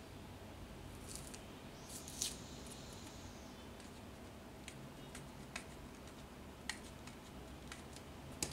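Faint handling of a roll of paper labels: a couple of short rustling scrapes, then scattered small ticks as fingers pick at the roll's outer edge.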